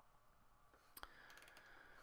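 Near silence with a single faint computer mouse click about a second in.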